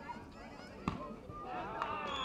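Volleyball players' voices and shouts, getting louder in the second half, with a single sharp smack about a second in: a hand striking the volleyball.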